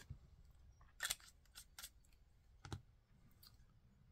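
A handful of faint clicks and taps from a resin fountain pen being handled, its cap taken off the back and the pen laid down on a mat. The clearest clicks come about a second in and just before three seconds in.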